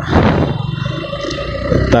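Suzuki Gixxer motorcycle's single-cylinder engine running under way, mixed with a steady rumble of wind on the action camera's microphone for about two seconds.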